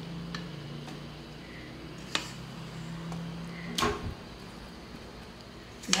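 A spatula scraping and knocking against a stainless steel mixing bowl as cake batter is emptied out. There are a few short knocks, the two clearest about two and four seconds in, over a faint steady hum.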